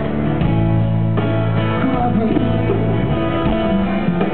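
Live rock band playing a slow song in an arena, with electric guitar to the fore over bass.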